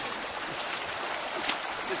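Steady watery hiss with a few faint splashes as a person wades through shallow water.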